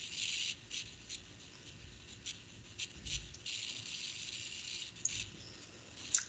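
Faint rustling and rubbing with a few soft clicks, picked up on a video-call microphone.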